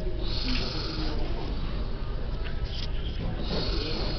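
Paper rustling as book pages are turned by hand, once just after the start and again near the end, over a steady low rumble.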